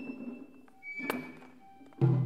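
Lull in Japanese festival hayashi music: the ringing of the previous drum strokes dies away, then a shinobue bamboo flute holds a high steady note, and a single sharp wooden knock sounds about a second in.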